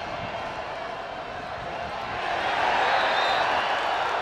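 Football stadium crowd noise that swells into louder cheering about two seconds in.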